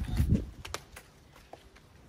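A brief low rumble of handling noise at the start, then a few sharp clicks and light knocks as debris and small stones are pulled from a gap at the base of a stone wall.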